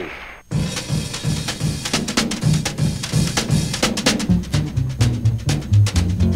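Opening of a 1950s rockabilly record: a drum kit plays a steady, fast beat on snare, bass drum and rim. About four seconds in, a bass line joins under the drums.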